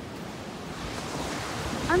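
Surf washing onto a sandy beach, with some wind on the microphone, growing a little louder about a second in.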